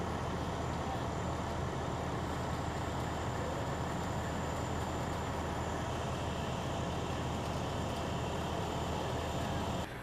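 Fire ladder truck's engine running steadily at the scene: a constant low rumble with an even hiss over it.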